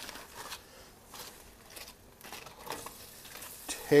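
Aluminium foil crinkling and rustling as a foil-wrapped packet is pulled open with metal tongs, in faint, irregular crackles.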